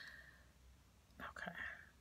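Near silence with a low steady room hum, and a brief soft whisper a little past the middle.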